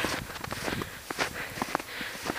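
Footsteps in fresh snow: a run of short, irregular steps, a few each second.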